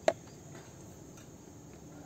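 Faint outdoor background with a steady high insect chirring, broken by one short click just after the start.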